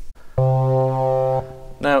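Studiologic Sledge synthesiser sounding one held organ-style tone, about a second long, that stops with a short fade. It is the raw Hammond B3-type patch with its oscillators set (oscillator 3 at 4-foot pitch, frequency-modulated by oscillator 1) before the filter is adjusted.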